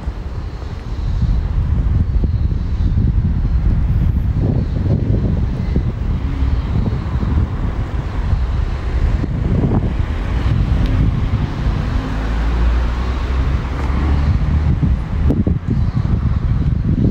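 Wind buffeting the microphone, a loud, gusty low rumble, over street traffic noise that swells into a broader hiss through the middle of the stretch.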